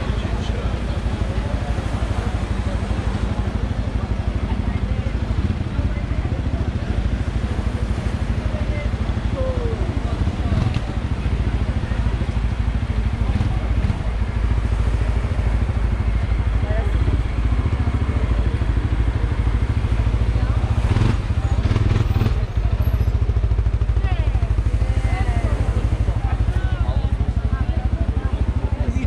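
A vehicle engine idling close by, a steady low rumble, under the chatter of a crowd of people talking.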